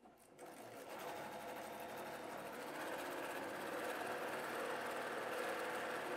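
Electric sewing machine stitching a seam through paired fabric squares, running steadily. It starts just after the beginning and gets a little louder over the first few seconds.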